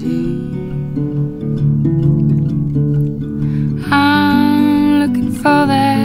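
Acoustic guitar picking a slow folk accompaniment. About four seconds in, a woman's voice comes in on a long held sung note, and another starts just before the end.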